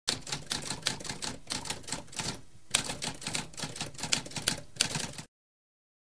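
Typewriter keys clacking in a quick run of keystrokes, with a short pause about halfway, stopping abruptly a little past five seconds in.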